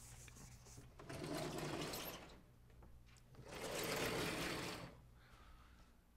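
Two long rubbing passes at a lecture-hall blackboard, each lasting over a second with a short pause between them.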